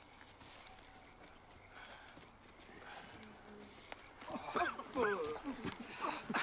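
Footsteps of a group walking through leaf litter and brush, crunching faintly. About four seconds in, louder vocal sounds rise and fall in pitch.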